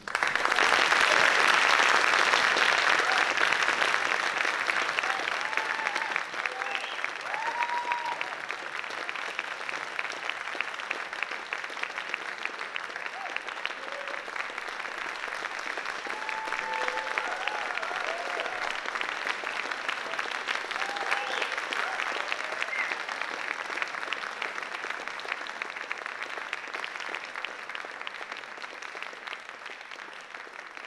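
Audience applause breaking out suddenly, loudest in the first few seconds, with scattered cheers from a few voices. It slowly tapers off toward the end.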